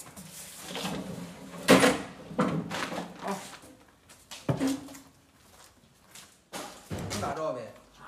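Sheet-metal engine hood of a Jinma tractor being lowered and shut: one loud metal slam about two seconds in, then a few lighter knocks as it is settled, with voices between them.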